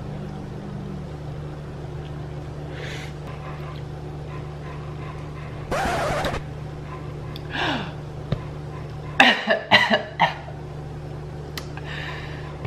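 A person coughing and sputtering after a mouthful of very spicy ramen: one harsh cough about halfway through, a smaller one soon after, then a quick run of coughs and throat-clearing sounds near the end. A steady low hum sits under it and drops away shortly before the last coughs.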